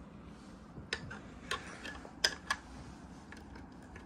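A handful of sharp clicks and taps, about five, the loudest a little past the middle, as a small portable air compressor is grabbed and shifted by hand.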